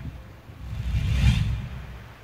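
Wind buffeting an outdoor microphone: a low rumble with a soft whoosh that swells to a peak a little past a second in, then dies away.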